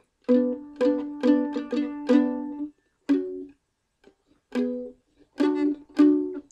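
Mandolin picked in two-note double-stops on the G and D strings: the 4th-fret G with the open D struck five times in an even rhythm, then one higher pair (7th-fret G with 4th-fret D), then after a pause a few more strikes of the lower pair. This is a slow demonstration of a repeating bass riff.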